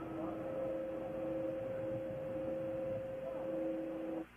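Open communications-loop audio carrying a steady hiss with two steady hum tones, one higher than the other.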